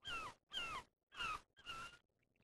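A bird calling four times in quick succession, each call a short pitched note sliding down in pitch, the last one flatter.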